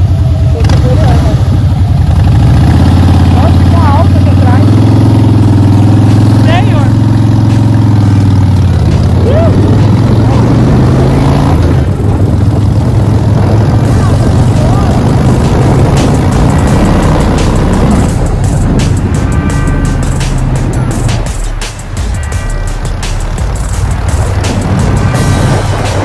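Motorcycle engine carrying two riders, pulling away and accelerating, its note rising about two seconds in and holding until about eight seconds. After that it falls back under a steady rush of riding wind on the microphone.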